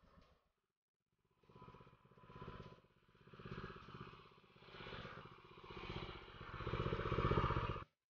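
A small engine running, its sound swelling and easing in waves about once a second and growing louder toward the end, then cutting off abruptly.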